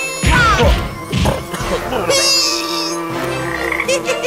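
Cartoon frog character croaking loud and deep, a few croaks with falling pitch in the first second and a half, followed by a short high buzz about two seconds in.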